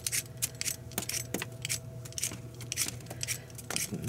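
Handheld potato peeler scraping strips of skin off a raw potato in quick, irregular strokes, about two or three a second.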